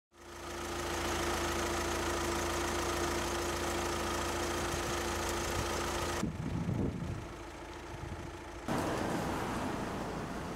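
A vehicle engine idling with a steady hum over street noise. The sound changes abruptly about six seconds in, with some lower rumbling, and shifts again a little before nine seconds.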